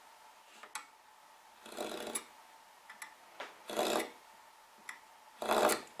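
Marking knife scoring a line into wood along a steel rule: a few short scratching strokes with light clicks between, the knife going over the same line in repeated passes to deepen it.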